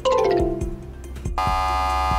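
Game-show sound effects over a music bed with a steady beat: a falling electronic tone for a wrong answer at the start, then, about one and a half seconds in, a loud steady buzzer tone as a contestant buzzes in to answer.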